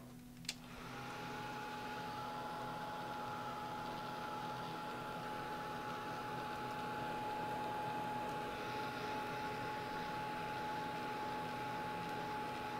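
Craft heat tool clicked on about half a second in, then its fan running steadily: a rush of air with a steady whine, drying paint on paper.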